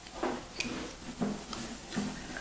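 Soft handling noise of a playing card being set down and slid on a wooden tabletop, with a few light taps.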